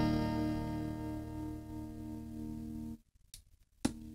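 Clean chord from a Donner DST-1S electric guitar ringing through its small practice amp, slowly fading. About three seconds in the sound cuts out almost completely, then a click, and the chord returns quieter while the amp's volume knob is being turned.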